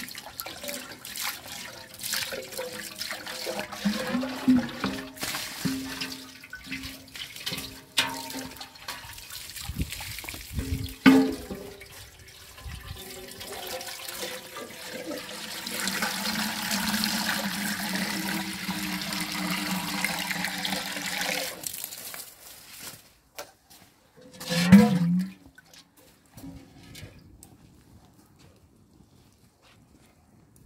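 Water from a garden hose pouring into a large empty metal stockpot, a steady rush lasting about six seconds around the middle. Before it come scattered knocks and clatter, and near the end a short loud sound.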